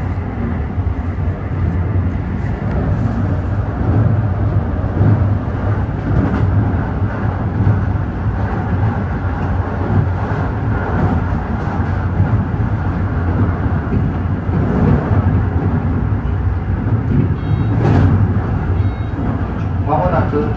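Electric commuter train running at speed, heard from inside the front cab: a steady low rumble of wheels on rail and traction motors.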